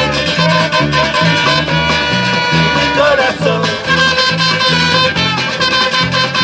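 Live band playing an instrumental passage with saxophone and trumpet over guitars, a stepping bass line and drums.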